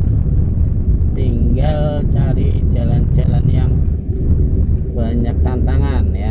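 Steady low rumble of a car's engine and tyres on the road, heard from inside the cabin while the car drives along. Voices talk over it in three short stretches.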